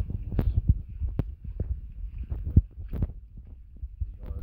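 Low rumbling and irregular knocks of wind buffeting and handling on a handheld phone microphone, with a few sharp taps scattered through.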